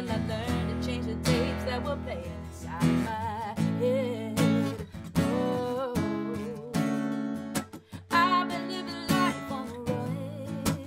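A woman singing a melody with vibrato, accompanying herself on a strummed acoustic guitar.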